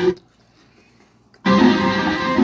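Live merengue band music from a concert video playing through a TV, with keyboard and singing. The sound drops out to near silence for about a second and a quarter, then the music comes back at full level.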